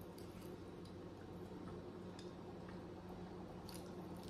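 Faint sounds of someone eating chicken wings: chewing with a few soft clicks and smacks, over a steady low hum.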